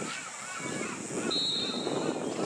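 A referee's whistle blows one short, steady blast about a second and a half in, stopping play. Distant players and spectators shout throughout.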